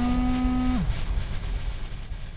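Electronic performance sound through a PA speaker: a pitched synthesized tone slides up, holds for most of a second, then slides back down. Underneath it a hissing noise bed fades out.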